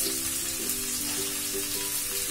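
Vegetables sizzling in hot olive oil in a non-stick pan over a high flame as more chopped vegetables are slid in, under steady background music with held notes.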